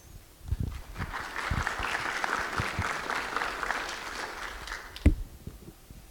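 Audience applauding for about four seconds, tapering off near the end, followed by a single sharp thump about five seconds in.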